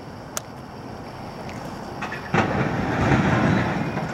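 Rumbling engine noise of a nearby heavy vehicle, possibly a skip loader. It starts faint and swells loud a little past halfway.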